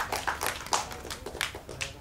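Light, scattered audience applause: many irregular hand claps, quieter than the speaker's voice.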